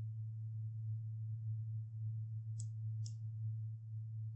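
A steady low electrical hum, with two faint clicks about half a second apart near the end.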